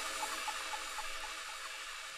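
A drum and bass track's fading echo tail after the music is cut: a short high blip repeating about four times a second, dying away within about a second and a half over a steady hiss.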